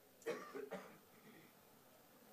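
A person coughing twice in quick succession.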